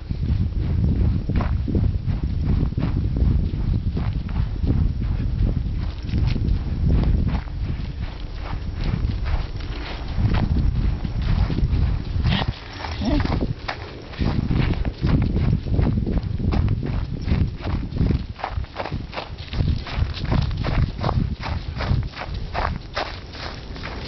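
Quick, regular running footsteps as a person hurries along with an old Leonberger dog, over a steady low rumble from the jostled handheld camera.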